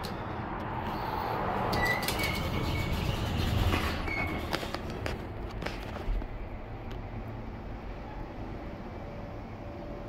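Hydraulic passenger elevator after a car button press: clicks and a few short high squeaks from the doors and cab during the first six seconds, then a steady low hum from the hydraulic pump as the cab rises, with a faint steady whine coming in near the end.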